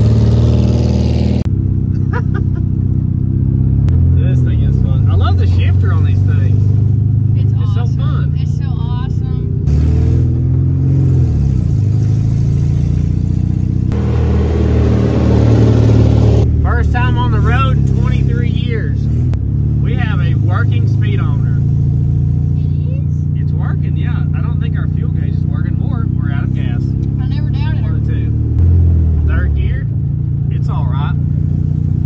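1971 VW Beetle's air-cooled flat-four engine running as the car drives, rising and falling in pitch several times as it revs and shifts. It is heard partly inside the cabin and partly from outside as the car passes.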